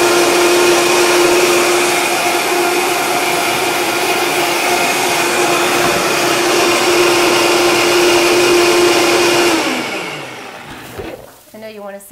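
Electric blender running steadily at high speed as it blends a dressing, then switched off about ten seconds in and spinning down with a falling pitch.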